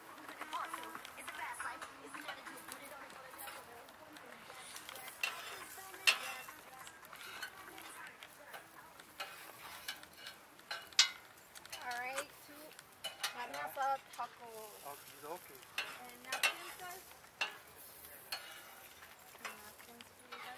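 Close handling of a plate of tacos while eating: scattered sharp clicks and scrapes of plate and cutlery near the microphone, over faint background voices.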